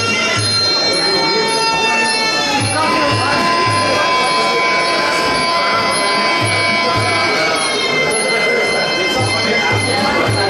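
Sarama, the live music of a Muay Thai fight: the pi java, a reedy Thai oboe, holding long nasal notes and dropping in pitch about two and a half seconds in, over low drum strokes that come in groups of two or three every few seconds. It accompanies the ram muay, the fighter's pre-fight ritual dance.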